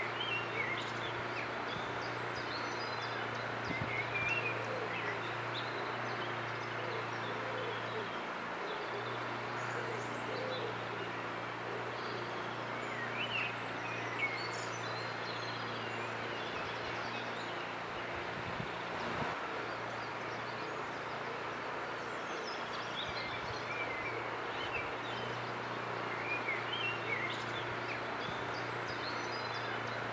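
Outdoor ambience: small birds chirping and singing in short scattered phrases throughout, over a steady background noise and a low hum.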